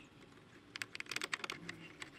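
A quick run of faint clicks about a second in, as a screwdriver drives a screw into a plastic car door trim panel.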